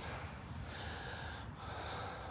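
Faint breathy rustle right at the phone's microphone as the phone is moved closer, coming in two soft swells about a second apart.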